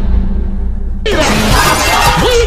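Logo-intro sound effects over music: a low boom dies away, then about a second in comes a sudden bright crash like breaking glass.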